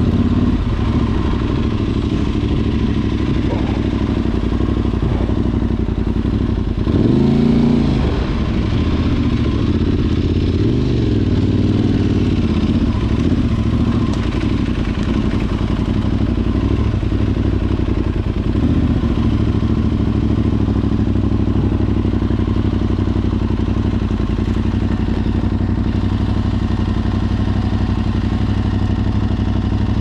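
Adventure motorcycle engine running at low revs while ridden slowly, heard from the rider's seat. About seven seconds in the revs rise and fall briefly, with a smaller rev a few seconds later.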